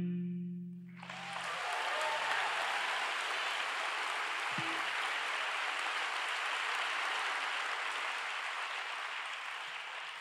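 The last sustained electric-cello note dies away, then audience applause starts about a second in and carries on steadily, slowly fading.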